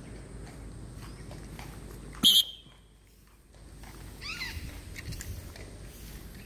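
A pet parrot screeching in free flight: one loud, short, shrill call a little over two seconds in, then a short run of quieter arching calls about two seconds later.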